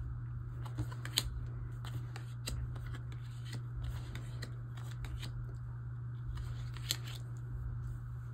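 Photocards being laid down and slid into place on a tabletop: scattered light clicks and taps, the sharpest about a second in and near the end, over a steady low hum.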